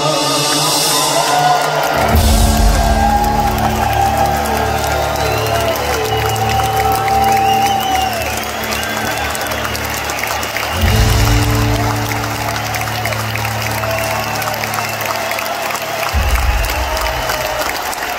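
Live rock band playing the closing chords of a song in an arena, with drums and bass coming in on big held chords about two seconds in, again past the middle and once more near the end, over a cheering crowd.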